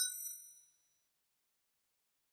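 A single short computer chime, a bright ding that fades out within about half a second, as the Windows User Account Control prompt opens on launching the setup file.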